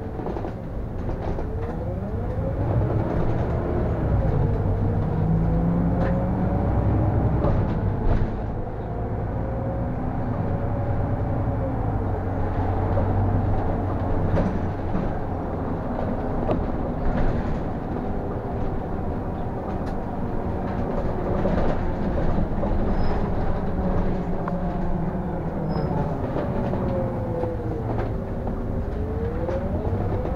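City bus heard from the driver's cab while driving: a low engine and road rumble under a whine whose pitch rises and falls as the bus speeds up and slows down.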